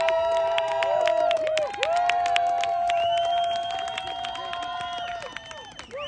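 A group of young players clapping their hands out of step with each other, with long, held cheering shouts over the claps; both are loudest in the first half and ease off later.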